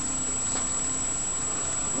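Steady background hiss from a webcam microphone, with a faint constant high-pitched whine and no distinct event.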